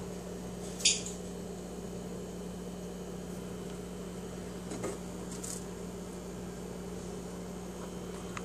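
A steady low electrical hum, with one short sharp click about a second in and two faint soft knocks near the middle.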